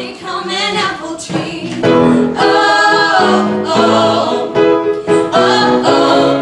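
Mixed men's and women's ensemble singing a show tune in harmony, softer for the first two seconds and then at full voice.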